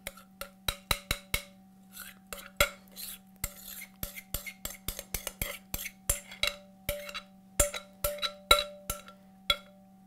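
A spoon tapping and scraping inside a mixing bowl as chocolate pudding is scooped out of it. The sharp clicks come two or three times a second, and some leave a brief ringing tone from the bowl.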